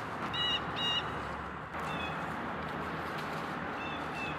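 A bird calls twice in quick succession with short, harsh notes, then gives two fainter calls later, over a steady background hiss.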